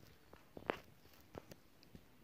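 Near silence with a handful of faint, short clicks scattered through it, the clearest one about two-thirds of a second in.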